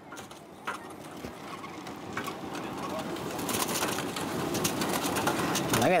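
Freshly fried French fries tumbling out of a perforated metal fryer basket onto a foil-lined tray: a rustling patter with a few light knocks, growing louder toward the end.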